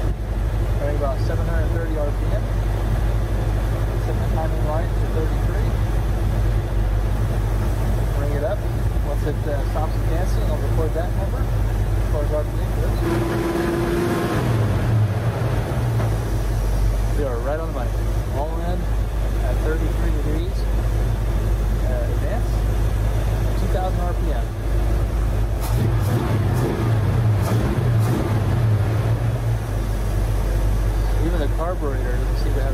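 1967 Mustang's 289 V8 running at idle while the ignition timing is checked with a timing light, its note shifting briefly about halfway through and again near the end.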